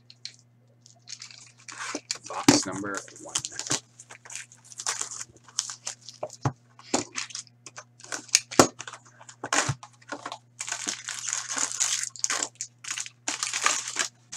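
Plastic shrink wrap and a cardboard hockey card box being cut open with a box cutter and torn apart, the packs pulled out. There are runs of crinkling and sharp crackles and clicks starting about a second in, over a faint steady hum.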